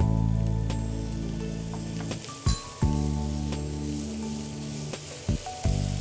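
Sliced onions sizzling in hot oil in a frying pan as tomato pieces are tipped in and stirred with a spatula, with a few sharp knocks of the spatula against the pan. Steady background music plays underneath.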